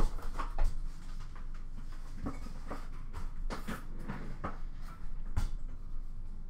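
Irregular light clicks and knocks of hands handling small objects at a desk, about a dozen scattered through, the loudest near the start and about five seconds in.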